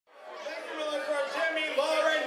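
Voices talking in a large room, fading in from silence.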